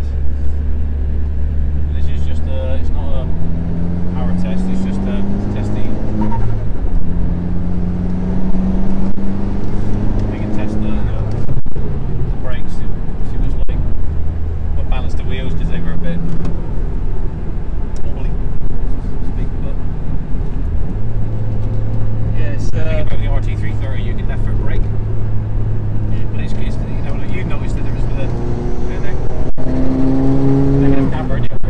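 Ford Fiesta ST's turbocharged four-cylinder engine heard from inside the cabin, pulling hard through the gears: its pitch climbs, drops back at each shift and climbs again, several times.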